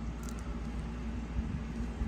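Faint scratching of a kitchen knife tip against the plastic shrink-wrap on a cardboard DVD box, over a steady low hum.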